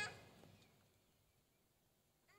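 Near silence: faint room tone in a pause between spoken prayers.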